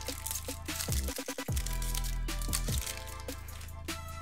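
Background music with a beat and held tones.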